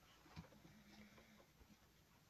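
Near silence: room tone, with one faint tap about half a second in.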